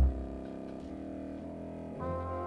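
Orchestral film score: a heavy low note that struck just before dies away at the start, leaving a quiet sustained chord.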